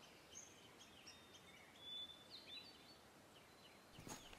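Near silence, with a few faint, scattered bird chirps.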